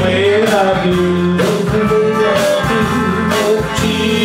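A small live band playing a country song: guitars over a steady bass and drums, with a held, wavering melody line.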